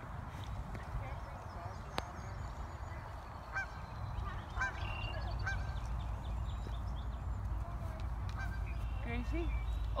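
Geese giving a few short, scattered honking calls over a steady low rumble.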